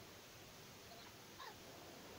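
Near silence: room tone, with one faint, brief animal call a little past halfway through.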